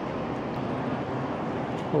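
Steady, even hiss with a low hum: the ambient noise of a stationary high-speed train at the platform, heard at its open door as passengers board.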